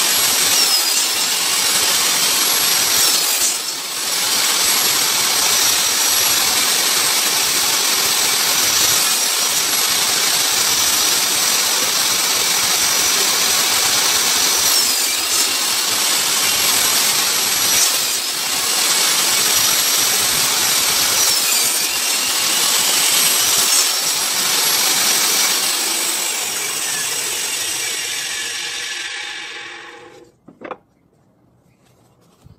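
Table saw running and cutting wooden hexagon pieces, trimming their edges to an equal size on a hexagon-cutting sled; its high whine dips briefly several times as the blade cuts. Near the end the saw is switched off and winds down, fading out.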